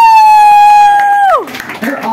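A loud, high whoop from one person's voice: the pitch rises quickly, holds for about a second and a half, then falls away.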